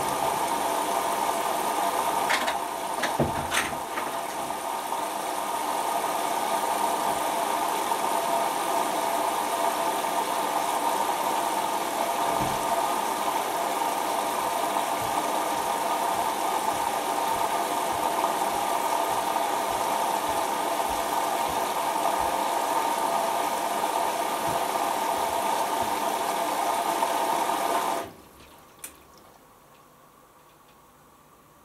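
Hoover Optima washing machine filling with water for its prewash: a steady rush of water through the inlet valve and detergent drawer, with a few clicks early on. The flow stops suddenly near the end as the valve shuts, followed by a single click.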